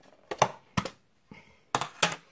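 Plastic tub of spread being handled and its lid worked off, a knife in the same hand: a few sharp plastic clicks and crackles, the last and longest near the end.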